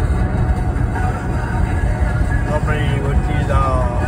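Steady road and engine rumble heard inside the cabin of a car cruising at highway speed.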